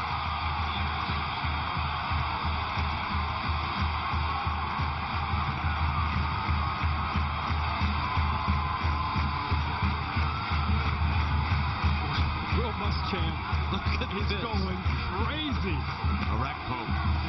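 Stadium crowd noise under music with a steady drum beat of about four beats a second.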